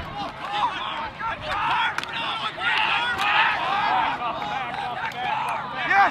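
Many voices from the players and sideline crowd at a lacrosse game, shouting and cheering over one another, with a few faint sharp clicks among them.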